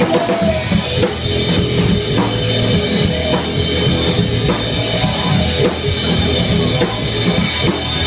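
A live band playing a song, with the drum kit's bass drum and snare keeping a steady beat under the other instruments.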